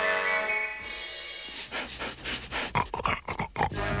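Cartoon background music holding a chord, then a quick run of short breathy huffs from a character, about four a second, through the second half.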